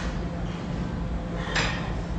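Gym room noise: a steady low hum, with two short hissing noises from the lifter's work on a seated chest press machine, one at the start and one about a second and a half later.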